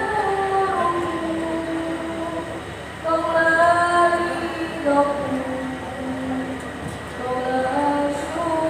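A large choir of students singing long held notes together over a PA, the pitch shifting about three seconds in and again about five seconds in.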